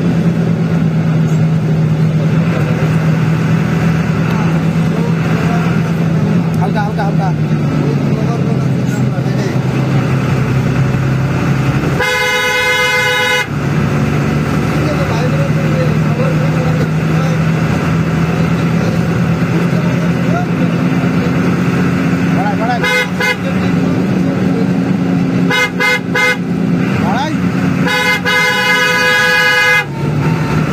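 Bus engine running with a steady drone that drops in pitch for a few seconds and picks up again. A bus horn gives one long blast about twelve seconds in, then several quick short toots and another longer blast near the end.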